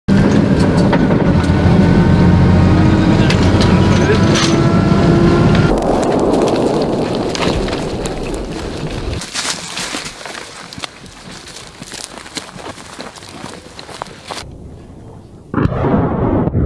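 A vehicle engine running steadily, heard from inside the cab, for about the first six seconds. Then quieter rustling, footsteps and scattered knocks of a soldier running through brush. A sudden loud noise comes just before the end.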